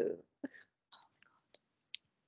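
The end of a spoken word over a video call, then near quiet broken by a few faint, very short clicks and breathy mouth sounds about half a second apart.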